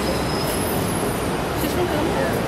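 Steady city street noise with a brief faint high-pitched squeal about half a second in.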